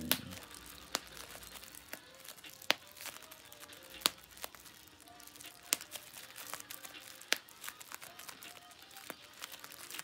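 Bubble wrap being popped by hand: single sharp pops at irregular intervals, about one every second or two, with faint crinkling of the plastic between them.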